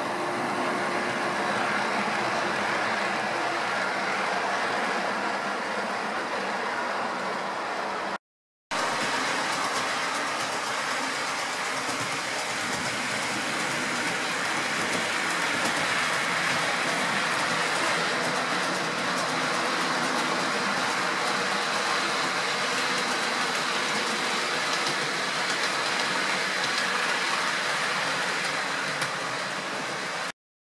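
Model trains running on a layout: a steady rolling noise of wheels on the track with a faint high motor whine. It breaks off for a moment about eight seconds in and then carries on.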